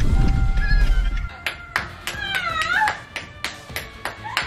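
Low rumble for about the first second, then background music with a steady beat of clicks and a high, wavering squeal of a woman's laughter about two seconds in.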